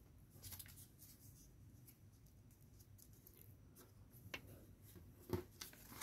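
Near silence, with a few faint rustles and crinkles of a sheet of paper being folded and pressed flat by hand, the clearest two near the end.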